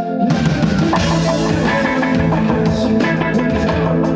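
Live indie rock band playing: electric guitars over a drum kit, the full band coming in with the drums just after the start and carrying on at full volume.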